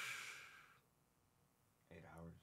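A man's short breathy exhale, a sigh, lasting about half a second at the start, then near silence; faint speech begins right at the end.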